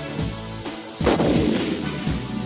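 Background music, then a sudden loud explosion sound effect about a second in that dies away over the next second.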